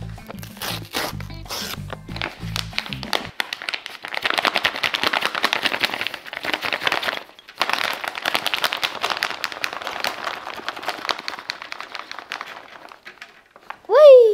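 Background music with a beat for the first three seconds, then a kraft paper bag crinkling and rustling as rubber bands are shaken out of it onto a table. A short, loud falling tone comes right at the end.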